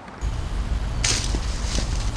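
Steady low rumble on a GoPro's microphone, starting suddenly just after the start, with a short rustle about a second in and a few light knocks.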